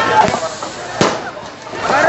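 Firecrackers going off amid bright sparks, with a sharp crack about a second in, over people's voices.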